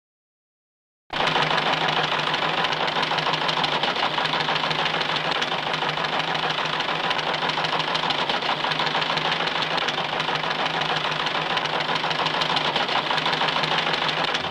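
Teleprinter printing a message: a rapid, steady mechanical clatter with a low hum underneath, starting suddenly about a second in after silence.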